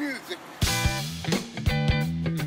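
A voice sliding up and down in pitch. About half a second in, a live rock band comes in loudly: drum hits, electric guitar chords and bass guitar, playing on through the rest.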